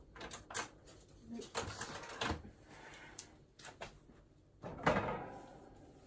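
A series of light clicks and knocks as items are handled and fitted into a wire rat cage, the loudest knock about five seconds in.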